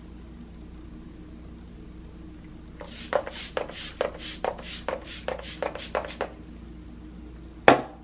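MAC Fix+ setting spray misted from its pump bottle onto the face: about eleven quick hissing spritzes, around three a second, starting about three seconds in. A single sharp knock follows near the end.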